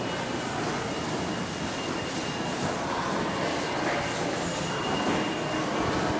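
New York City subway train running in the station, heard from the transfer corridor as a steady rumble and hiss with a faint thin high tone, growing a little louder near the end.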